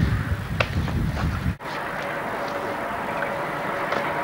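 Low rumble and knocks from an old camcorder's built-in microphone, typical of wind or handling on the mic, for about a second and a half. After a brief dropout, steady tape hiss with a faint hum follows.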